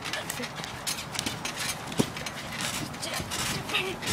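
Bare feet bouncing on a trampoline mat: an irregular run of soft thumps and rustles, with one sharper knock about two seconds in.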